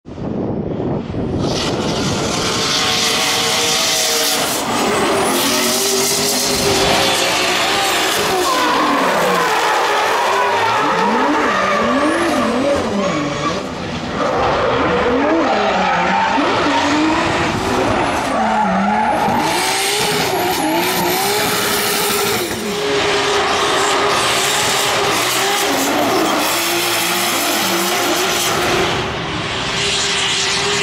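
Toyota GT86 drift cars drifting, their engines revving up and down with the throttle while the tyres squeal and hiss through long slides. The sound dips briefly about 14 and 22 seconds in.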